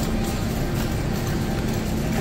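Shopping cart rolling across a smooth grocery-store floor, a steady low rumble of its wheels.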